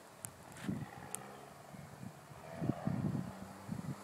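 Faint, steady hum of a distant engine, with irregular gusts of wind buffeting the microphone.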